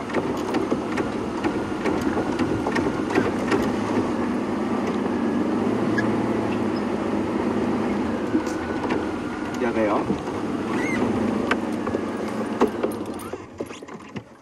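Open game-drive vehicle driving over a rough bush track: engine running steadily under a dense rumble, with scattered knocks and rattles. The sound drops away near the end.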